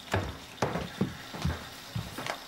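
Footsteps, five short thudding steps at about two a second.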